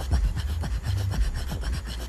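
Throat singing: quick, rhythmic rasping breaths in and out over repeating low grunting pulses, with no words.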